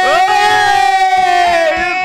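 A man's long, drawn-out celebratory shout at a goal, held on one high pitch for about a second and a half before breaking off, with another yell starting near the end.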